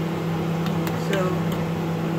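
Steady low motor hum, with a couple of light clinks of a steel ladle stirring in a stainless steel pot of soup.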